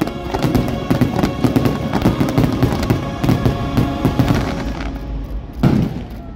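Fireworks finale: a rapid run of bangs and crackling from aerial shells over orchestral show music, with the music fading out. One last loud burst comes near the end.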